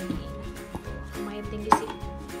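Hard plastic lunch-box containers clacking as they are handled and stacked, with one sharp clack near the end, over background music.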